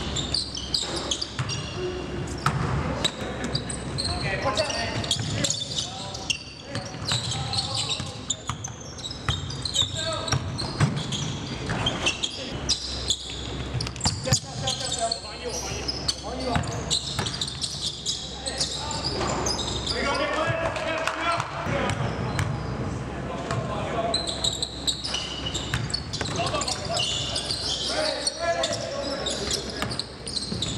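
A basketball bouncing on a hardwood gym floor during live game play, with repeated sharp knocks, over players' voices calling out on the court.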